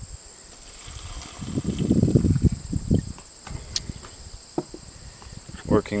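A glass jar of water and seed being handled and set down on a wooden board: a stretch of rough handling noise about two seconds in, then a few light clicks and knocks. Crickets chirr steadily in the background.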